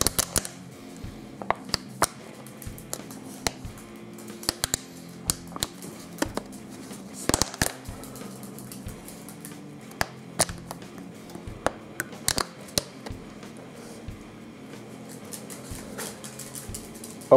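Thin plastic water bottle crackling and popping in irregular sharp clicks as it is squeezed and released to suck egg yolks out of a bowl of raw eggs, separating yolks from whites. Faint music plays underneath.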